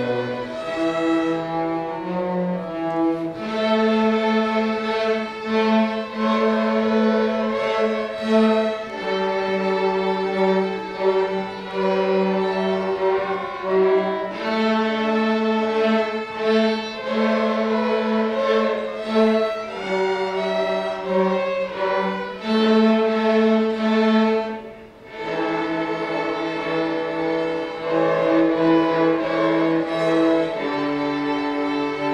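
Middle school string orchestra of violins and cellos playing a lively square-dance-style arrangement, with sustained bowed notes and chords. There is a brief break about five seconds before the end, then the playing picks up again.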